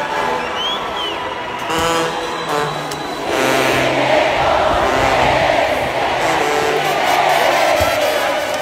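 Live brass band music with sousaphone and trumpets. About three seconds in, a large crowd's cheering rises and stays loud over the band.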